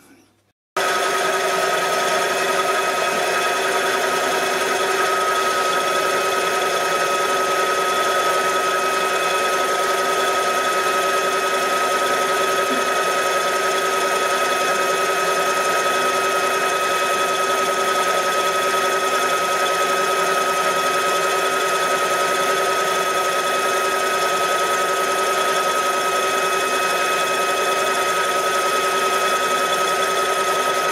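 Small metalworking lathe running steadily, turning a wooden lamp plinth, with an even, constant whine from its motor and gearing. The sound starts suddenly about a second in.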